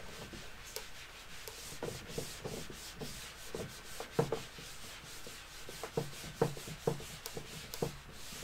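A whiteboard being wiped clean with a cloth: a steady rubbing swish broken by short, irregular squeaks and knocks as the cloth drags over the board.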